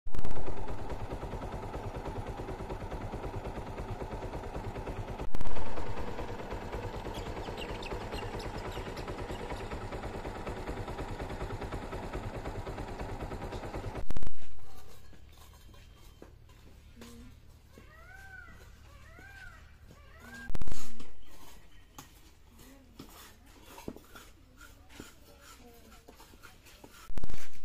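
Steady rushing noise of outdoor air on the microphone, broken by a few loud short thumps. After that a much quieter stretch with scattered light taps and a few short rising-and-falling calls.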